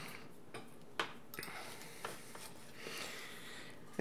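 A few faint, sharp clicks and light taps of small tools being handled and put down at a workbench after soldering, the loudest about a second in.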